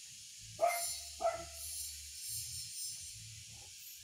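A dog barks twice, about half a second in and again just after a second in, over a steady high pulsing insect buzz.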